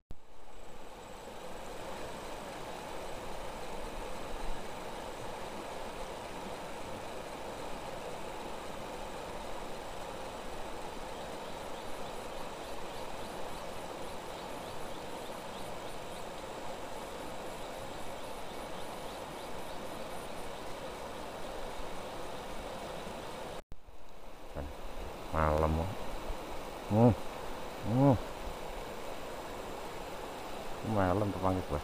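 Steady rush of a fast-flowing river current. It breaks off abruptly about three-quarters of the way through, and a few short voice sounds follow.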